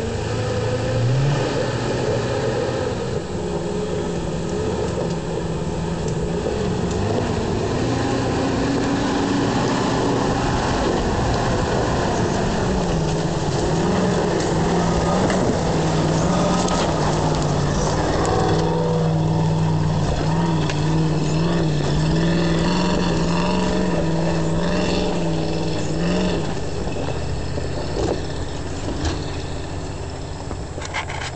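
1973 Range Rover's V8 engine pulling under load as the 4x4 climbs a steep, muddy track, its revs rising about a second in and then wavering up and down. Tyres churn on the mud, and the engine eases slightly near the end.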